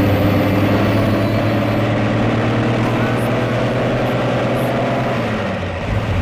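Motor vehicle engine running steadily: a low, even engine hum, used as a travel sound effect. Its pitch dips slightly near the end.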